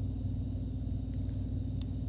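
Steady low hum with several even pitched tones, like a running motor or appliance, and one faint click near the end.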